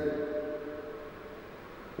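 A pause between spoken sentences: the echo of a man's voice dies away into faint, steady room tone.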